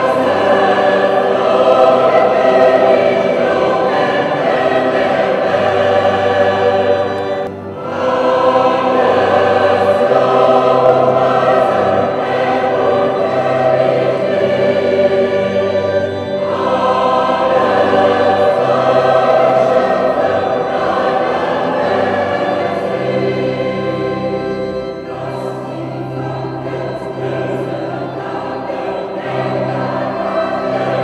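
Mixed choir of men's and women's voices singing sustained phrases together, with a short break between phrases a little over seven seconds in.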